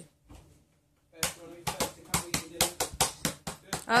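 A toddler's hands tapping and slapping a plastic lap tray. A quick run of sharp taps, about four to five a second, starts a little after a second in.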